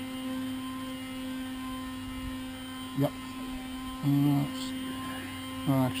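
A steady low hum holding one even tone throughout, with a short spoken 'uh' about four seconds in.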